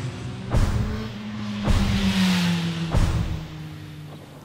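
Branded intro sting: music and sound effects made of a steady low engine-like drone, swells of hiss, and three sharp hits about a second or so apart.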